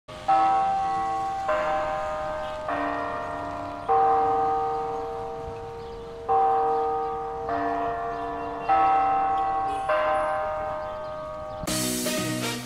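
Clock-tower chime bells playing a four-note melody twice, one struck note about every second and each left ringing, the last note of each phrase held longer. Music starts near the end.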